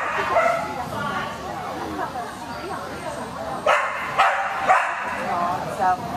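Dog barking repeatedly over people's voices, with a quick run of sharp barks a little past halfway.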